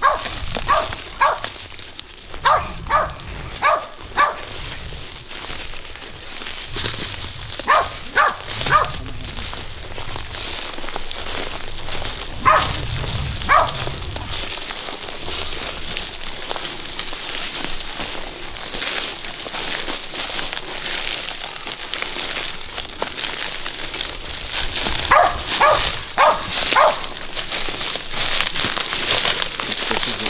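Hunting dogs barking in short runs of two to five barks, the runs several seconds apart: the dogs are baying a wild hog held up in the brush. A steady high hiss runs under the barks.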